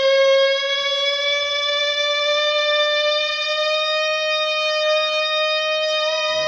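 Electric guitar holding one long sustained note that slowly rises in pitch.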